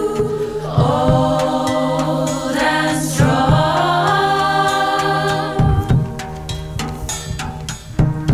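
Choir of women's voices singing sustained, many-part chords over a steady low drone, the chord shifting about a second in, with a few light percussive hits.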